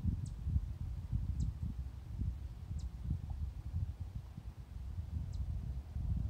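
Wind buffeting the phone's microphone, a gusty low rumble, with a bird's faint high chirps four times, each a quick downward sweep.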